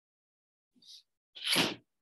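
A person sneezing once: a faint intake about three-quarters of a second in, then a loud, short burst about a second and a half in.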